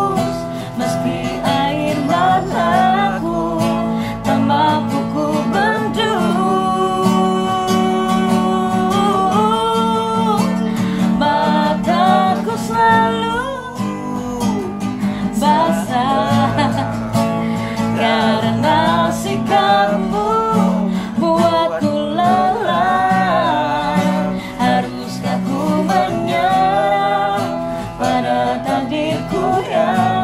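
Acoustic guitar strummed with a voice singing a slow pop melody along with it, in long held notes.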